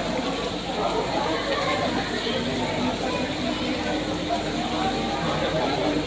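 Several people talking at once in a hall: overlapping, indistinct conversation and greetings at a steady level.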